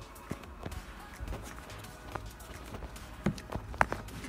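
Scattered light knocks and clicks from footsteps and a phone being handled while walking, over a low steady hum. The sharpest knocks come near the end.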